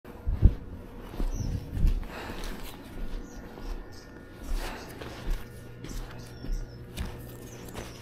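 Footsteps on asphalt, a few irregular thuds spread over several seconds, over a faint steady low hum.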